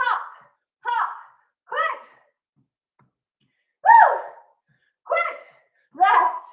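A woman's short, pitched vocal calls, about one a second in groups of three with a pause between groups, matching the 'hop, hop, quick' cadence of an interval workout.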